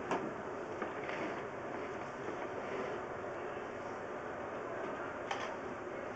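Steady rushing noise with a few light knocks as a sewer inspection camera is pushed along a 6-inch clay drain pipe, its push cable scraping and bumping inside the pipe.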